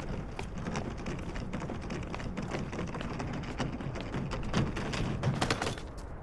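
Wheels of a hard-shell rolling suitcase rumbling over paving stones, with quick irregular clicks and taps as they cross the joints; a few louder knocks near the end.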